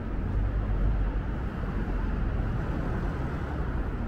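Steady street traffic noise from cars passing on the road ahead, with a low rumble throughout.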